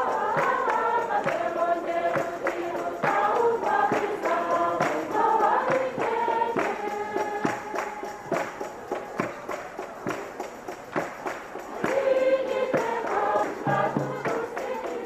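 A choir of many voices singing a religious song to a steady percussive beat.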